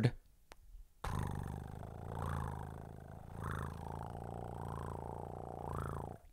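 Domestic cat purring steadily, starting about a second in: a very happy cat.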